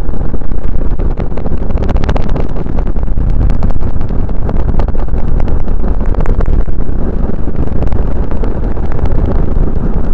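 Road and wind noise of a car driving at highway speed, picked up by a dashcam inside the car: a loud, steady low rumble with many small crackles through it.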